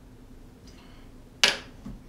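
A quiet moment, then about one and a half seconds in a single sharp metallic clink with a short ring as a steel bar jigger is set down on the bar top, followed by a soft knock.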